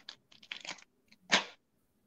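Paper crinkling and rustling in a few short bursts as a printed sheet is handled, the loudest crackle about a second and a half in.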